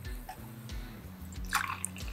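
Faint trickle of white wine poured from an aluminium can into a steel jigger, then from the jigger into a chilled glass.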